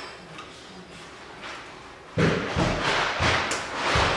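Scissors and black construction paper handled at a countertop: quiet snipping at first, then about two seconds in a run of knocks and paper rustles as they are set down and moved on the counter.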